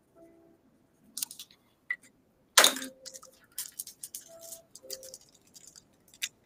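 Quiet, scattered crinkles and clicks of Magic: The Gathering cards and booster-pack wrapping being handled, with one louder crackle about two and a half seconds in and a run of light crackling after it. Faint short musical tones sound underneath.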